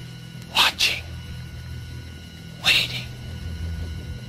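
Movie soundtrack audio: a steady low drone with short, sharp breathy hisses over it, two in quick succession about half a second in and one more near the three-second mark.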